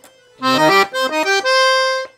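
Serenelli Acarion piano accordion playing a short phrase on its harmonium treble register: after about half a second, a quick run of reedy notes ends on a held note.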